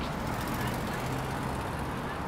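Steady outdoor city ambience: a continuous wash of distant traffic with indistinct voices of people around.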